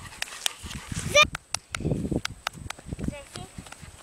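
Small dog giving a couple of short barks while being coaxed to do a trick, among scattered sharp clicks and low rumbles on the microphone.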